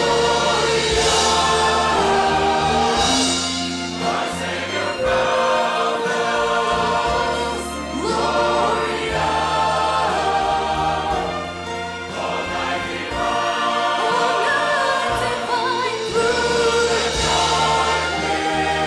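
Large mixed choir singing with an orchestra of strings and flute, held chords in phrases that dip and swell again about every four seconds.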